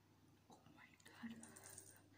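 Faint breathy hiss about a second in, lasting under a second: a person drawing air in and out through the mouth against the chili burn of spicy noodles.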